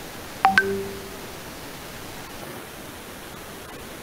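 A short electronic beep about half a second in: two quick high notes, then a lower note held for under a second, over a steady background hiss.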